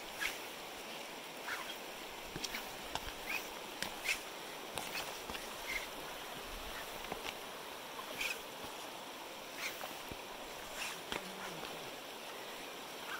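Steady rush of a shallow river running over rocks, with short high chirps and sharp clicks scattered throughout.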